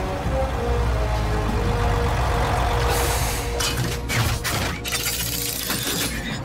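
Film soundtrack music with held notes. From about halfway, a run of sharp metallic clanks and crashes comes in.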